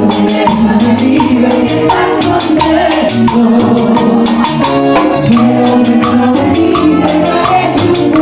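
Live cumbia santafesina band playing: a piano accordion and keyboards carry sustained melody notes over a steady quick percussion beat, with a woman singing lead into a microphone.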